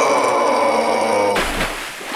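A cartoon character's long, held scream while falling, lasting about a second and a half, followed near the end by a short burst of crashing noise.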